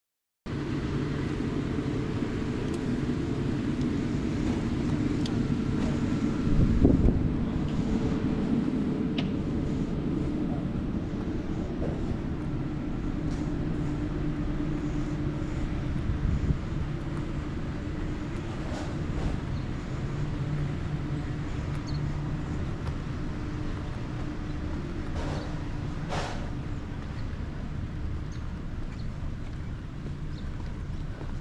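Steady low rumble of outdoor background ambience with a faint hum, swelling briefly about seven seconds in, with a few faint ticks.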